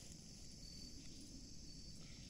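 Faint, steady insect chorus: a high, thin trill that swells and fades slightly, over a low outdoor rumble.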